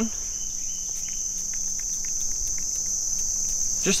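A steady, high-pitched insect chorus droning without a break, with a few faint ticks over it.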